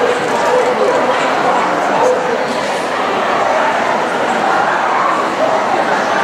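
Dogs barking among the steady chatter of a large crowd in a busy show hall, both continuing without a break.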